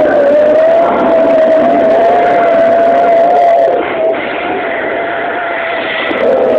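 Zipline trolley pulleys running fast along the steel cable, giving one steady, slightly wavering whine over a loud rushing noise. The sound eases a little about two-thirds of the way through.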